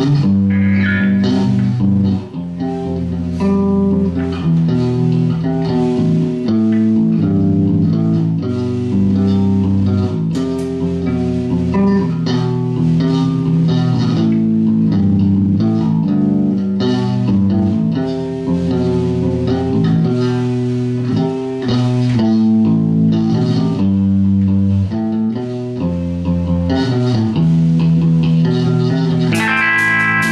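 Electric guitars and a bass guitar playing a song together through amplifiers, the bass notes strong and the guitar notes changing constantly. Near the end a run of sharp cymbal hits comes in.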